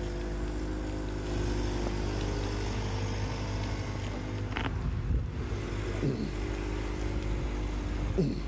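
Motor vehicle engine running steadily, a low rumble with an even hum. A short knock comes about four and a half seconds in.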